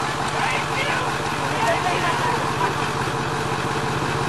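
An engine idling steadily, with faint voices in the background.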